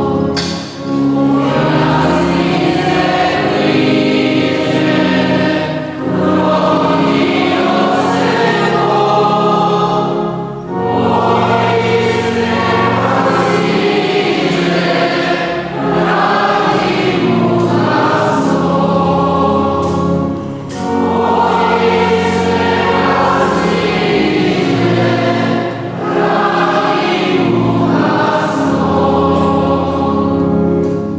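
Church choir singing a hymn, in phrases with short breaks about every five seconds.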